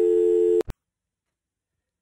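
A steady telephone line tone at the end of an answering-machine message cuts off about half a second in with a short click, followed by dead silence.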